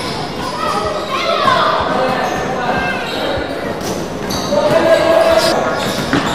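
Basketball bouncing on a wooden gym floor amid players' voices and calls, all echoing in a large sports hall.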